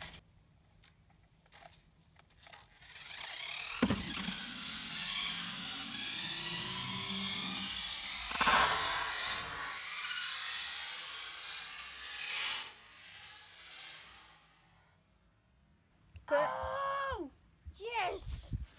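Toy RC off-road car's small electric motor and gears whining as the car drives and tumbles over the grass, with a sharp knock about four seconds in and another around eight and a half seconds as it strikes the ramp or lands. The whine dies away a few seconds before the end.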